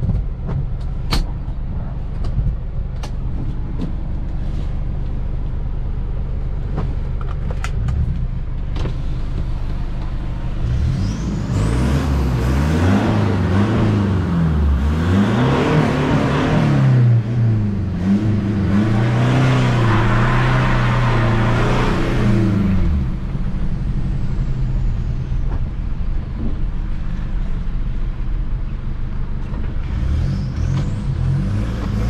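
Toyota Hilux Vigo pickup's engine heard from inside the cabin, running steadily at low speed. About a third of the way in it revs up and drops back several times as the truck accelerates through its manual gears, louder for some ten seconds, then settles back to a steady hum.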